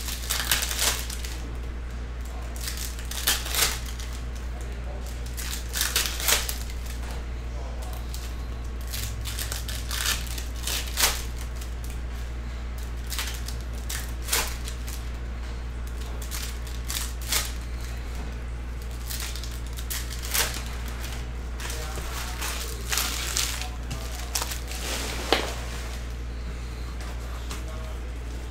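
Trading-card pack wrappers crinkling and cards being handled, in short, irregular rustles over a steady low hum.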